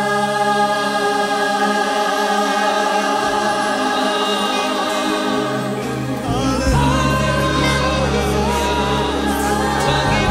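Gospel-style worship music: voices in a choir singing long held notes with vibrato over instrumental backing. A strong low bass comes in about six seconds in.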